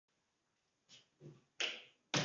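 A few short, sharp taps or clicks: two faint ones about a second in, then a louder one near the end that fades quickly.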